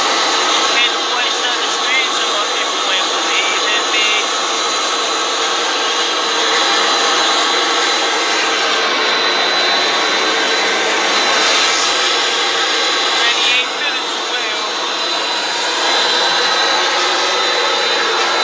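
Business jet's engines running: a loud, steady rush with a thin high whine held on one pitch, and a voice faint beneath it.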